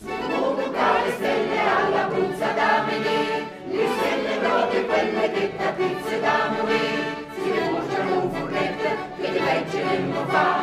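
Mixed choir of men's and women's voices singing a folk song in parts, entering right at the start, with short breaks between phrases about four and seven and a half seconds in.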